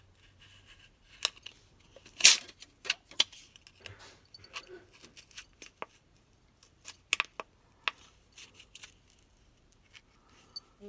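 A flat metal opening tool scraping and clicking along the edge of a Samsung Galaxy A20's plastic back cover as it is slowly pried away from its heat-softened adhesive. Scattered clicks and short scrapes, the loudest about two seconds in.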